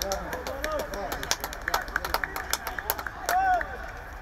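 Men's voices calling and talking across an open football pitch, with scattered sharp knocks in the middle and one loud call a little past three seconds in.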